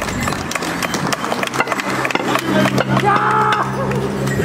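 Border Morris dance in progress: a rapid clatter of wooden sticks and stamping feet, with the band's low held notes coming in about halfway and a short shout near the end.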